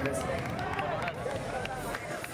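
Several people's voices calling out and talking over one another in a concert crowd, just after the band's music stops.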